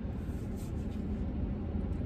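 Steady low rumble inside a parked truck's cab, with faint rustling as someone feels around the seat for a dropped pill.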